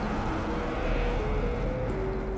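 Channel intro music with held synth-like notes over a rushing whoosh sound effect that swells to a peak about a second in and then eases off.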